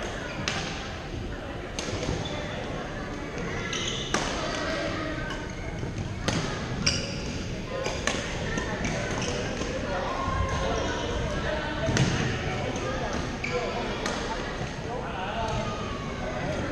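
Badminton rackets striking shuttlecocks, sharp smacks every second or two from several courts, over background chatter of players in a large gym hall.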